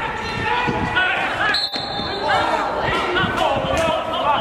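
Footballers shouting and calling to one another across an empty stadium during play, with the knocks of the ball being kicked.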